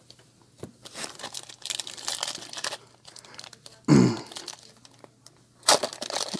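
Foil trading-card pack wrapper crinkling as it is handled, then tearing open with a loud rip near the end.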